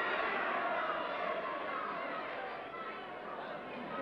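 Wrestling crowd in the hall chattering and calling out, many voices blended together, slowly dying down.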